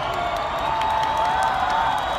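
Large crowd cheering and clapping, with a few voices holding long calls above the noise and scattered sharp claps.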